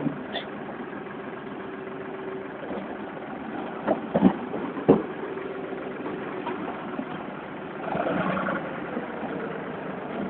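An engine idling steadily, most likely the red machine working the wrecked-caravan debris pile, with a few sharp knocks of debris about four to five seconds in.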